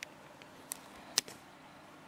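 A few light clicks of the hinged plastic bobbin-access cover on a Juki TL-2010Q's extension table being handled, the sharpest just after a second in.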